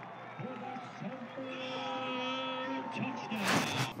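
Football stadium field sound: a faint bed of distant voices and crowd with a steady held tone in the middle, then a short loud rush of noise near the end.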